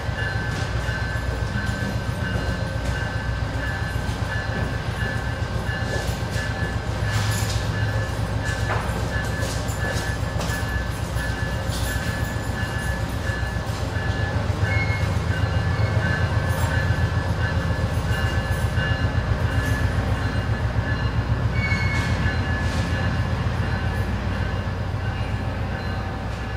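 A stationary train running steadily: a low rumble with a fast pulse and a constant high-pitched whine over it.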